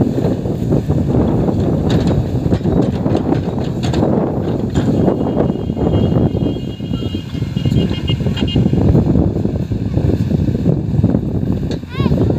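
JCB 3DX backhoe loader's diesel engine running steadily under load while the backhoe arm digs a trench in dry soil.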